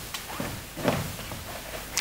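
Quiet room tone of a hall, with a faint, indistinct murmur about a second in.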